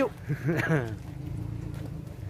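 A person's voice, briefly, about half a second in, over a steady low hum.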